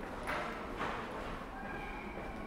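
Footsteps on stone paving under a stone archway, a few steps about half a second apart, each with a short echo. Faint steady tones come in near the end.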